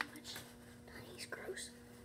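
Quiet whispered speech with a short click at the start, over a steady low electrical hum.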